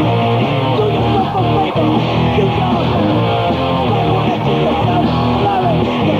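Thrashcore band playing live in a radio studio: loud distorted electric guitar riffing over the rhythm section, dense and unbroken.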